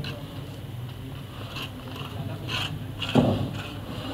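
Hand scraping through a heap of sand-cement mortar on a concrete floor, with one louder, short scrape about three seconds in.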